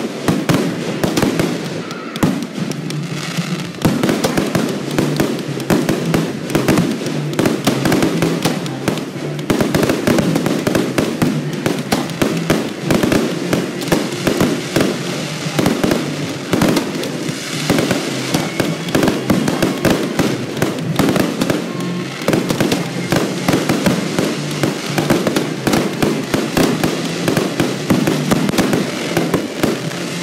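A fireworks show: aerial shells and fountains going off in quick succession, a dense run of bangs and crackles with no break, over music.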